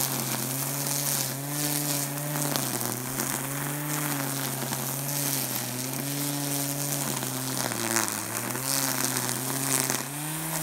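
Corded electric string trimmer running, its motor whine sagging and recovering in pitch about once a second as the spinning line bites into grass and weeds, with the deepest dip near the end. A hiss with light ticks of the line striking the growth runs under it.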